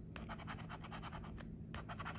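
A plastic scratcher tool is scraping the coating off a scratch-off lottery ticket. It goes in a quick run of short, quiet strokes.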